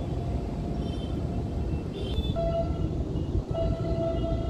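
Storm wind gusting against the microphone, a heavy low rumbling buffet. About halfway through, a faint steady whistling tone comes in on top of it.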